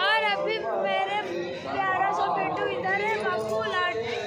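People chattering, several voices talking over one another.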